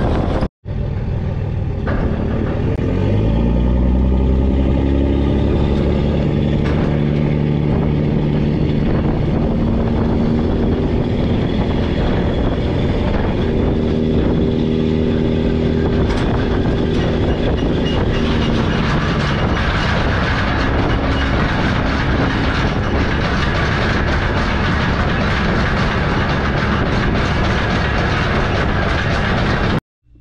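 Gooseneck trailer being towed on a paved road: steady tire, road and wind noise, with a droning tone that rises in pitch about three seconds in as it speeds up, then holds steady.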